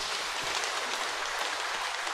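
Congregation applauding in a church: many hands clapping in a dense, even patter that slowly dies away.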